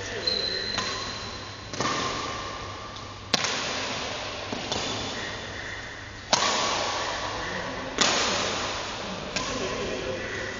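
Badminton racket strikes on a shuttlecock during a rally: five sharp hits, one to three seconds apart, each ringing out in the echo of a large sports hall.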